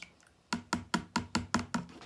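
A quick regular run of about seven light plastic knocks, about five a second, as the emptied plastic jug of lye water is tapped against the plastic mixing bowl.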